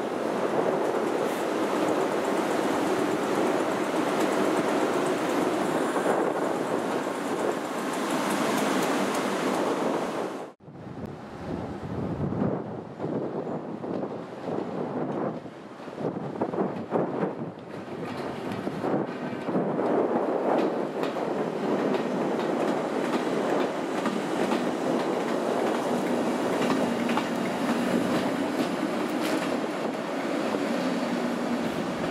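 Pair of Class 90 electric locomotives running light engine, with steady wheel-and-rail running noise. After a sudden break about a third of the way in, the wheels clatter irregularly over points and rail joints on curved junction track, then settle back to steady running.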